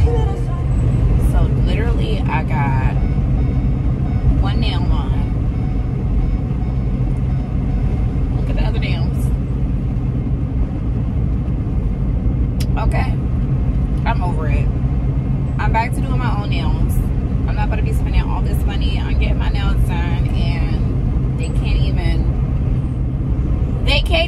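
Steady low rumble of a car heard from inside its cabin, with a woman's voice speaking on and off, more often in the second half.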